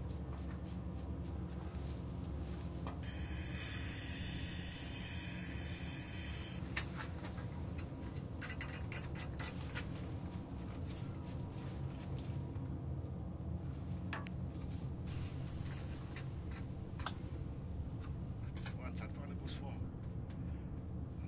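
Light scrapes, taps and rustles of moulding sand being brushed, sieved and pressed by hand into a metal casting flask, over a steady low hum. A hiss runs for about three and a half seconds a few seconds in.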